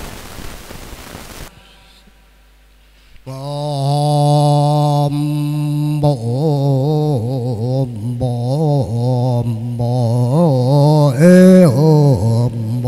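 Brief applause that dies away about a second and a half in. After a short pause, a man starts a Mo Mường chant through a microphone: he holds one long note, then goes into a wavering, ornamented chanted line.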